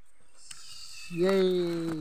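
One long held vocal call, starting about a second in and lasting over a second, steady and slightly falling in pitch.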